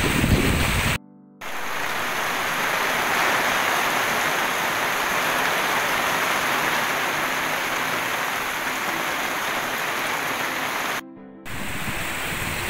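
Heavy rain falling steadily, an even hiss. A second of loud low noise comes first, then a short silent gap, and the rain cuts out again briefly near the end.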